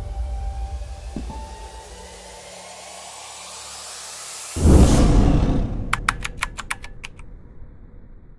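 Cinematic sound-design effects: a whoosh that swells and rises over a few seconds into a heavy impact hit about halfway through, which rings and fades. A quick run of about eight sharp ticks follows.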